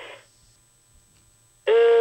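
Brief soft noise, then a second and a half of phone-line hush. Near the end comes a caller's long, held hesitation sound "euh", heard through a telephone line.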